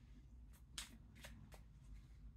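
Faint handling of tarot cards: about four light, short flicks and slides of the cards as one is drawn.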